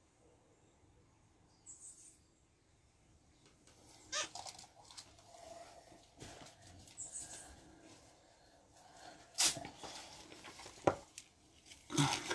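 Quiet, scattered sounds of a person moving on a tiled floor in sneakers: faint scuffs and taps, with two sharp knocks, the loudest sounds, near the end.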